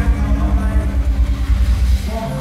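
Live band playing an instrumental passage, heavy on bass and drums, with a fast, even pounding beat and sustained bass notes.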